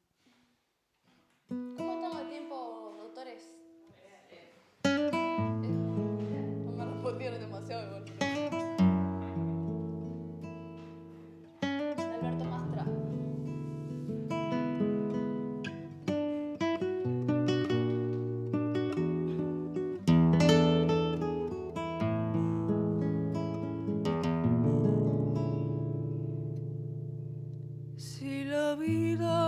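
Classical guitar played solo, a plucked melody ringing over held bass notes, beginning about a second and a half in.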